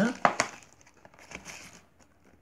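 Small cardboard box being torn open by hand: two sharp rips of the paperboard flap a few tenths of a second in, then fainter crinkling and rustling of the packaging.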